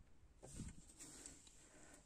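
Near silence: room tone, with one faint, short soft sound about half a second in.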